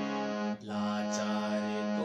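Harmonium played slowly: a held note, a short break about half a second in, then a long sustained note with the reedy drone of the bellows-fed instrument.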